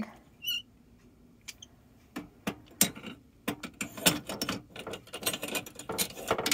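Metal Marcel curling irons clicking and clinking as they are handled against each other and their holders, a rapid string of light knocks starting about two seconds in.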